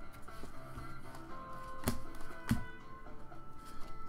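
Quiet background music with long held notes. Near the middle come two sharp taps about half a second apart, from trading cards being handled.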